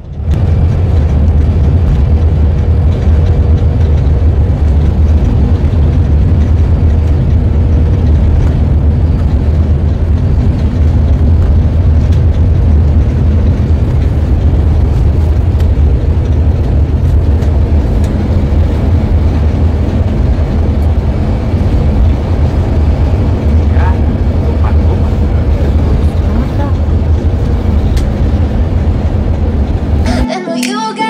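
Steady low rumble of a coach bus driving at speed, engine and road noise heard from inside the passenger cabin.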